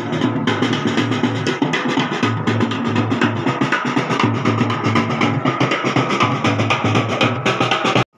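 A procession band's drums and percussion playing a fast, steady beat.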